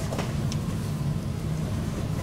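Steady low room hum in a lecture hall, the background rumble of the hall's ventilation and sound system during a pause in the talk.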